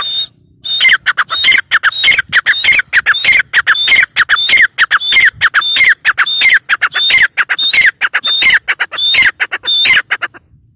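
Gray francolin calling over and over, about two calls a second, each a short high note that drops in pitch. The run starts after a brief pause near the start.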